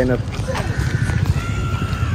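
Royal Enfield Bullet motorcycle engines idling with a low, rapid thudding, and a faint thin high tone in the second half.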